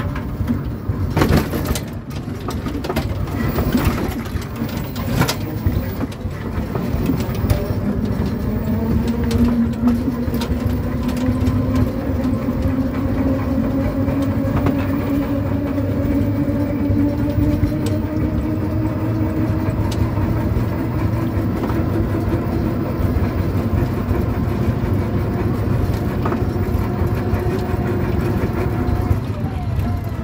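Riding in an auto-rickshaw: a motor hum that climbs slowly in pitch as the vehicle gathers speed, over steady road rumble, with several knocks and rattles in the first few seconds.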